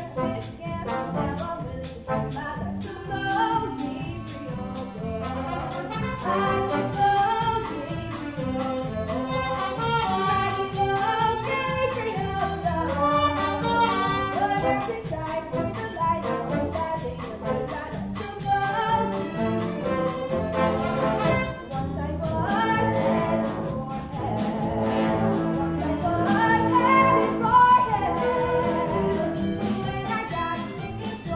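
Live pit orchestra playing brassy, jazzy show-tune music with a steady beat, the brass rising and growing louder in the last few seconds.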